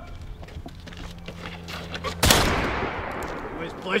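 A single gunshot about two seconds in, with a long echoing decay that fades out over about a second and a half.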